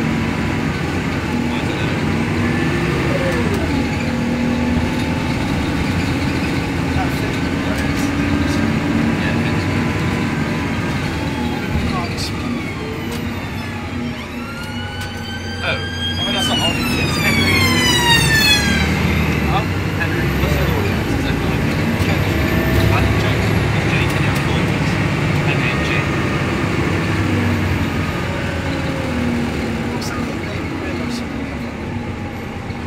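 Inside a Plaxton Centro single-deck bus on the move: steady engine and road noise, the engine note shifting as it drives. About halfway through, a high tone with many overtones glides up and then falls for a few seconds.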